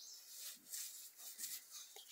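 Faint, scattered scratchy strokes of a bristle paintbrush against rough, weathered wood as sealer is brushed on.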